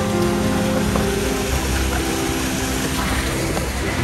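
Steady rushing of water sheeting down a stone water-wall fountain, with background music fading out over the first couple of seconds.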